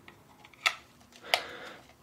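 A thin screwdriver's tip clicking against the small plastic printer case and its screws: two sharp clicks less than a second apart, the second followed by a faint scrape.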